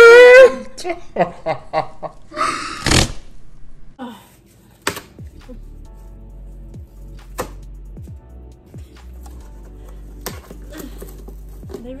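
A woman laughs loudly, then soft background music plays, broken by a few sharp taps and knocks from handling a cardboard box.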